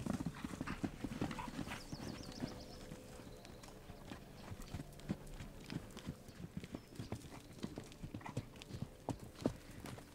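Horse hooves trotting on loose, sandy dirt, an irregular run of hoofbeats that is loudest in the first couple of seconds.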